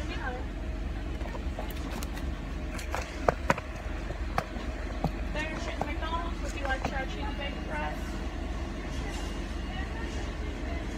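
Car engine idling, heard from inside the cabin as a steady low rumble, with a few sharp clicks and knocks about three to five seconds in.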